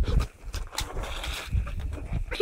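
Footsteps on packed snow and a person dropping down onto the snow, with irregular low thuds and short scuffs.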